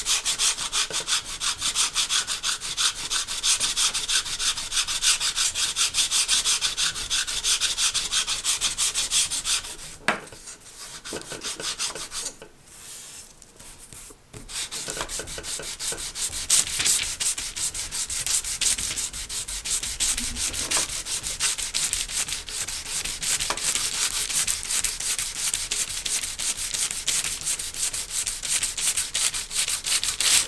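Sandpaper on a sanding block rubbed in quick back-and-forth strokes over the thin wooden horizontal stabilizer of a hand-launch glider, tapering it toward paper thin. The strokes pause for about four seconds around ten seconds in, then resume.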